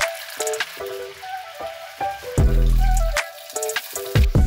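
Battered chicken pieces deep-frying in hot oil in a saucepan: a steady bubbling sizzle. Background music plays over it, with a deep bass note from about two and a half seconds in.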